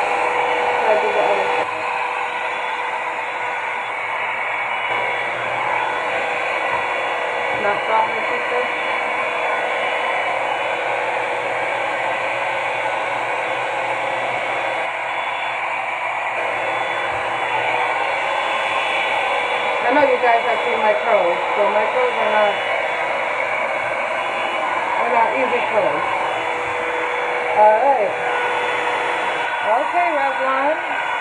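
Revlon One-Step Hair Dryer and Volumizer, a round-brush hot-air styler, running steadily as it is drawn through damp hair: a constant rush of fan air with a steady motor whine.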